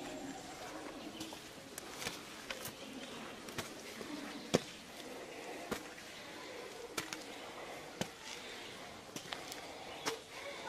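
About a dozen sharp clicks and knocks at uneven intervals, the loudest about halfway through, over a faint background murmur of distant voices.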